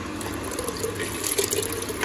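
Ice water pouring and splashing steadily from a steel bowl into a clay pot of set cream (malai), chilled water being added before churning it into butter.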